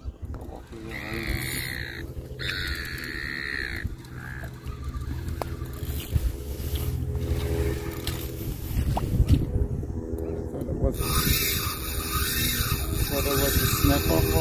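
Spinning reel's drag buzzing twice near the start as a hooked fish takes line, over wind rumble on the microphone. A steady hiss comes in about eleven seconds in.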